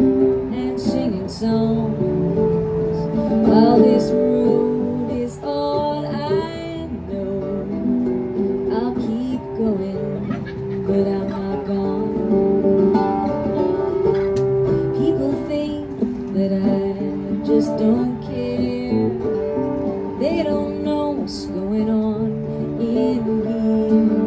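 Acoustic guitar strumming with an electric bass playing along, an instrumental passage between sung lines of a live song.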